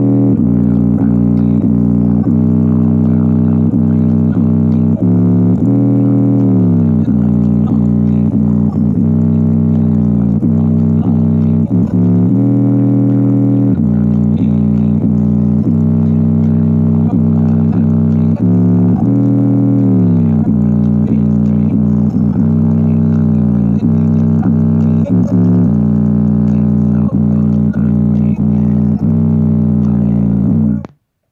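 Bass-heavy music played loud through a JBL Charge 4 portable Bluetooth speaker with its grille off, fitted with a Charge 5 woofer and run at 100% in LFM (low-frequency mode). Deep sustained bass notes dominate, changing and sliding in pitch every few seconds.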